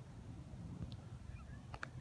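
Faint outdoor background with a low rumble and a few brief high-pitched calls, one about a second in and a pair near the end.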